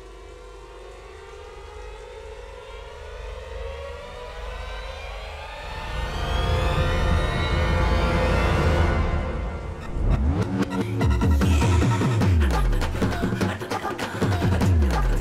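Dramatic film score: a rising swell of many tones gliding upward and growing louder over about eight seconds, then, after a brief dip, a pulsing beat of deep drum hits with falling pitch sweeps.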